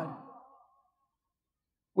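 A man's spoken phrase trailing off in the first half second, then dead silence until his speech starts again at the very end.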